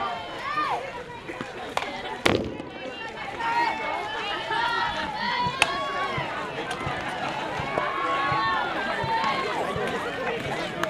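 A single sharp crack of a softball bat hitting the ball about two seconds in, ringing briefly, followed by many overlapping voices of players and spectators shouting and cheering as the play unfolds.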